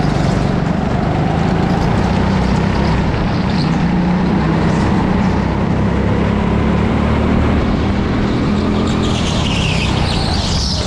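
Go-kart engine running steadily under load, heard from a camera mounted on the kart itself, with a rushing noise over it. Near the end a brief higher-pitched squeal comes in as the kart turns into a corner, likely the tyres sliding on the track surface.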